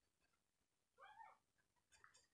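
Near silence, broken once about a second in by a faint, short animal call that rises and falls in pitch.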